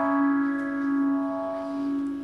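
Electric guitar note played through a NUX Phaser Core pedal, held and ringing out, slowly fading.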